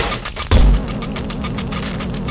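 Electronic music: fast, even ticking percussion over a deep bass thump about half a second in.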